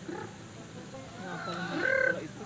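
A rooster calls, with a short, pitched call near the end, over quiet voices.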